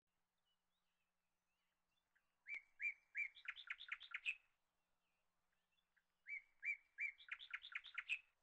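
A bird singing two similar short phrases. Each phrase is a few separate chirps followed by a quick run of notes climbing in pitch. The first starts about two and a half seconds in and the second about six seconds in.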